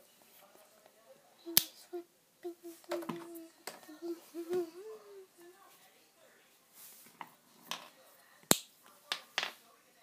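Wax crayons being set down one at a time on paper over a wooden floor: a handful of sharp clicks and taps. The two loudest come about a second and a half in and near the end.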